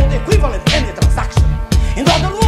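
Hip hop track: a rapped vocal over a bass-heavy beat, with strong kick hits about three times a second.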